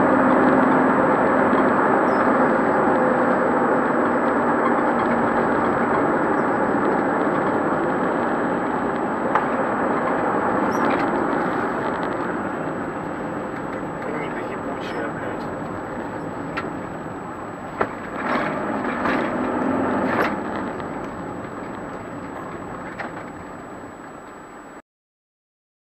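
Steady road and engine noise inside a moving car, picked up by a dashcam, growing gradually quieter as the car slows in traffic. A few short knocks come near the middle and toward the end.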